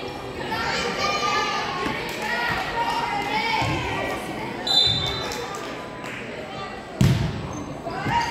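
Echoing gym sound of volleyball players and spectators calling out, with a couple of dull ball thumps on the hardwood. About five seconds in comes a short, shrill referee's whistle, and about two seconds later a sharp slap as the volleyball is served.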